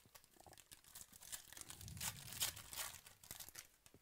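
The shiny plastic wrapper of a 2018 Panini Prizm football card pack crinkling and tearing as it is ripped open by hand. It is loudest around the middle and dies away near the end.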